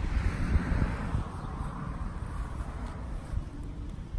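Wind rumbling on a phone's microphone, with a soft hiss that fades away over the first two seconds.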